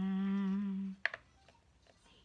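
A woman humming one steady note for about a second, followed by a short sharp click and a couple of faint taps.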